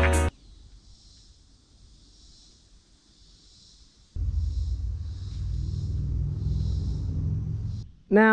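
Background music cuts off just after the start, leaving faint outdoor ambience with a soft, gently pulsing high hiss. About four seconds in, a steady low rumble of wind on the microphone begins.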